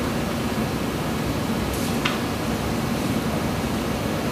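Steady, even background hiss of room noise, like ventilation, with no speech.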